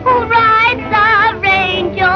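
A woman sings three short, held notes in a high, girlish cartoon voice with a wide vibrato, on a dull, narrow-band 1930s film soundtrack.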